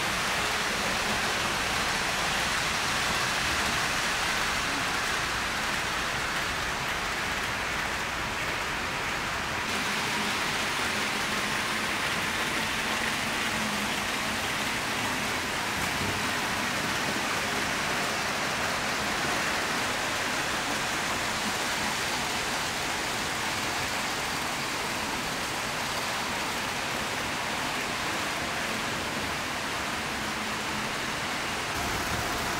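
HO-gauge model trains running on layout track: a steady rolling hiss of metal wheels on the rails, its tone shifting slightly about ten seconds in.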